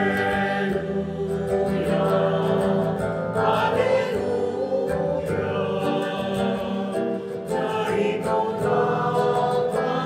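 Choir singing the closing hymn of a Catholic Mass, with musical accompaniment.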